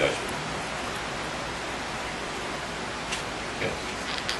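Steady background hiss of recording noise, even across the range, in a pause between a man's words.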